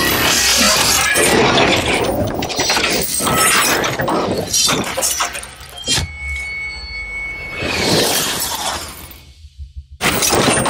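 Sound design for an animated logo intro: music mixed with crashing, shattering impacts. Partway through, a high ringing tone holds for a couple of seconds, then a swelling rush comes before the sound dies down near the end.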